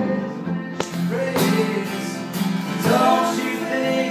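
Two steel-string acoustic guitars strummed together in a live duo, with a man singing over them.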